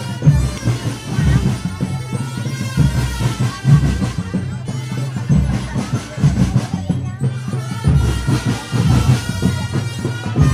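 Marching drum band playing: drums beating a steady, pulsing rhythm under held melody tones.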